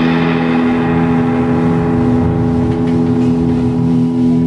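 Overdriven electric guitar holding a sustained chord that rings steadily, with bass and drums playing underneath in a live rock jam.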